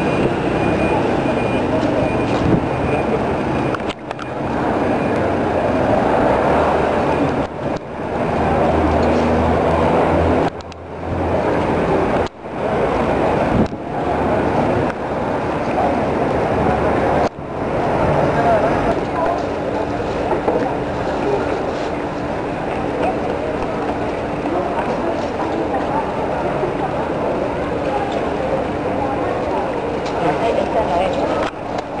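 Murmur of a large crowd massed in a street, many indistinct voices blending with no clear words. The sound cuts out briefly several times in the first half, and a faint steady hum joins about two-thirds of the way in.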